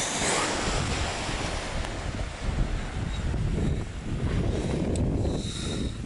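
Wind buffeting the microphone in uneven gusts, over the wash of sea surf.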